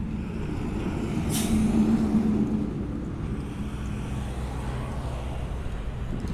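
Road traffic: a motor vehicle passing close by, its engine hum swelling to a peak about two seconds in and then easing off, with a short sharp hiss about a second and a half in.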